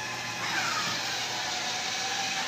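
Electric drive motors of a battery-powered ride-on toy car running as it is driven by remote control across a tiled floor. The whine falls in pitch about half a second in.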